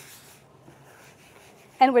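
Soft rubbing of a cloth wiping down a kitchen worktop, fading out about half a second in.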